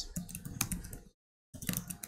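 Computer keyboard typing: a quick run of light key clicks as a short line of code is typed, cutting out completely for about half a second just past the middle before the clicks resume.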